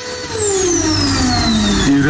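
Steam ozone sauna cabinet's machine running with a loud rushing noise and a whine that falls steadily in pitch.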